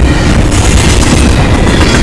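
Double-stack container train's cars rolling past close by at high speed: a loud, steady rumble of steel wheels on rail with clatter from the cars.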